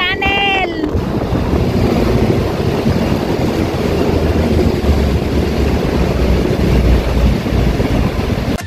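A brief voice in the first second, then steady wind buffeting on the microphone with a deep rumble, as of riding a motor scooter at speed through a road tunnel.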